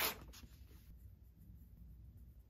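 A sheet of notepad paper rustling briefly as it is handled and laid on the table, followed by faint scratching of a pen writing on it.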